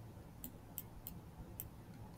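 Faint computer mouse clicks, four of them at uneven intervals of about half a second, as shapes are selected and dragged on screen.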